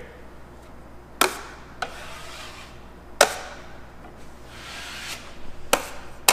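A 6-inch steel drywall knife scraping joint compound over screw heads on drywall, with four sharp knocks, the loudest about three seconds in.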